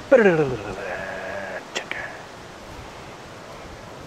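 A person laughing for about the first second and a half. The laugh starts high and slides down in pitch. After it come a single click near two seconds in and a faint steady outdoor background.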